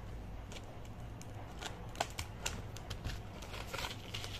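Scissors snipping through a paper seed packet: a handful of short, sharp clicks spread irregularly over the few seconds, with paper handling growing busier near the end as the packet is opened.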